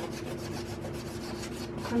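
A hard pastel stick scratching across the textured painting surface in quick, repeated strokes as grass lines are drawn.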